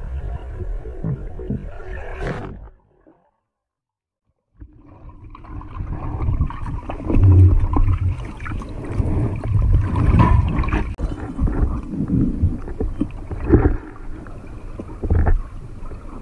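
Underwater noise picked up by a spearfisher's camera: water sloshing and gurgling, then a sharp snap of the speargun firing about two seconds in. After a second or two of dead silence, louder underwater rumbling returns with several knocks and thuds.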